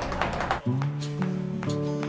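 Background music of plucked acoustic guitar that cuts in suddenly about half a second in. Just before it there is a brief stretch of noisy tapping.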